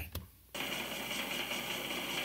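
A live 1970s rock drum solo recording resumes suddenly about half a second in: fast, dense drumming with a steady, hissy top.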